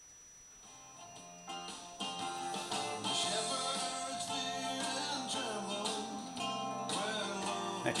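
Music from an FM radio station played through a Luxman R-1050 stereo receiver, coming up from near silence during the first two seconds as the volume is turned up, then playing steadily.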